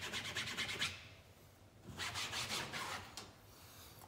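A cloth rubbed briskly over grasscloth wallpaper in quick back-and-forth strokes: a burst in the first second, a short pause, then another burst about two seconds in.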